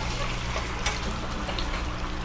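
Food sizzling in a frying pan on a gas burner as it is tossed with metal tongs, with a light click of the tongs just under a second in.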